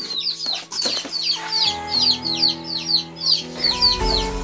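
Baby chicks peeping: a quick run of short, high, falling chirps, several a second. Background music with held notes comes in a little before halfway.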